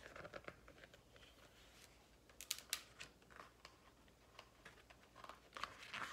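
Faint rustling and clicking of a picture book being handled and its page turned, with a few sharp ticks around the middle.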